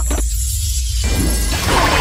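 Cartoon soundtrack music. About one and a half seconds in, a noisy sound effect comes in and the sound gets louder.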